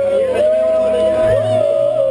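A man's voice holding a long, high drawn-out yell, broken briefly about half a second in and swelling again near the end before cutting off.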